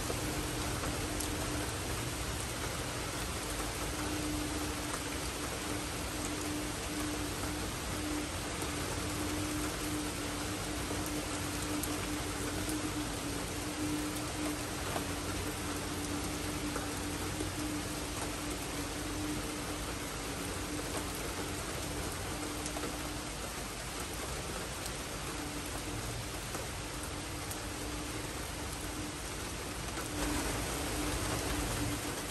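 Steady rain falling, an even hiss, with a steady low hum underneath.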